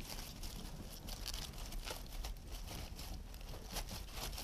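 Faint rustling and crinkling of leaves and flower stems as an iris stem is slid down through a dense arrangement of fresh flowers, made of many small scattered crackles over a low room hum.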